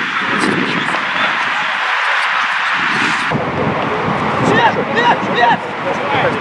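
Footballers shouting to each other on the pitch, heard from a distance. A steady rushing noise lies under faint voices at first, then changes abruptly about three seconds in to several short, clear shouts.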